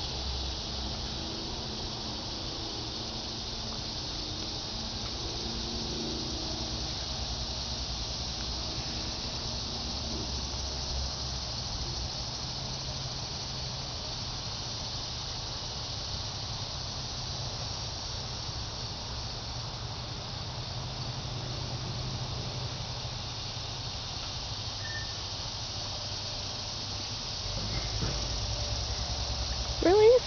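Outdoor summer ambience: a steady high hiss of insects chirring, over a low rumble.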